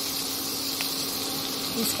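Melted butter sizzling in a hot kadhai with maida flour just added: a steady hiss, with a steady low hum underneath.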